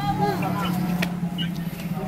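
Indistinct voices in the first second over a steady low, engine-like hum.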